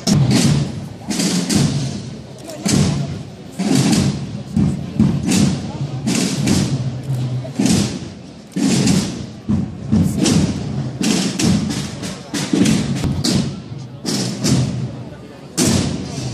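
Processional drums beating a slow, uneven march, with heavy thuds coming about once or twice a second.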